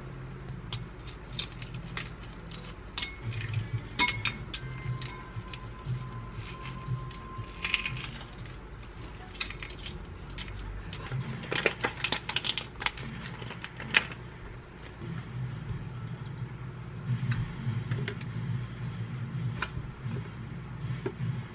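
Kitchen prep handling sounds: scattered light clicks and taps as food is handled, with a cluster of crackling a little past the middle as a boiled egg's shell is cracked and peeled off. A low steady hum runs underneath.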